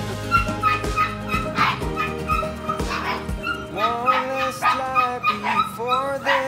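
Goldendoodle puppies yipping and whimpering as they play, the calls bending up and down, over background music with a steady beat.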